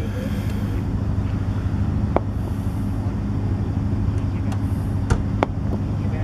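A steady low hum with a faint even background noise, broken by a few isolated faint clicks.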